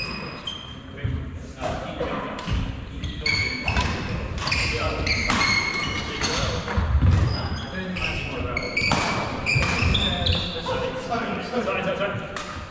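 Badminton doubles rally: rackets strike the shuttlecock in a quick run of sharp hits, with sports shoes squeaking briefly on the wooden court floor and feet thudding as the players move.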